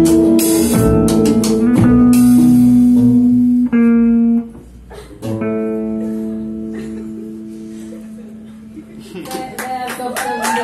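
Live band of electric guitar, acoustic guitar and violin with drums playing the closing bars of a song: loud chords with drum hits, a brief break about four and a half seconds in, then a final chord that rings out and fades. Audience cheering starts near the end.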